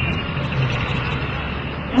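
Street traffic: a steady wash of vehicle noise with a low engine hum running throughout.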